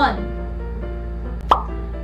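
Soft background music with steady held notes. A single short pop sound effect, the loudest thing here, falls about one and a half seconds in, and the end of a spoken word trails off at the start.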